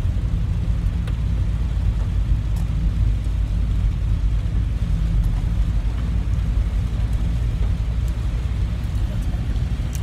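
Steady low rumble of a car driving, heard from inside the cabin, with a few faint clicks.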